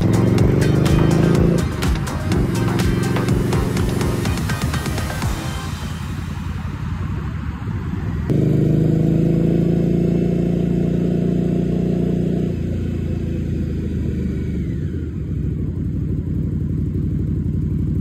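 Indian Scout motorcycle's V-twin engine running under way, its note rising as it accelerates, with breaks where gears are shifted. Its sound jumps suddenly louder about eight seconds in and eases off again a few seconds later.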